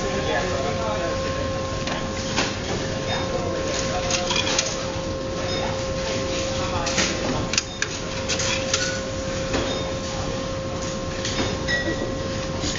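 Clicks and knocks of cash being fed into the payment slots of a supermarket self-service checkout. A steady electronic hum sounds over them and cuts off near the end.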